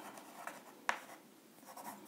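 Chalk writing on a chalkboard: faint scratching strokes as a word is written, with one sharper chalk tap just under a second in.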